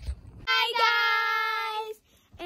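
A girl singing one long held note without words, about a second and a half long, starting about half a second in.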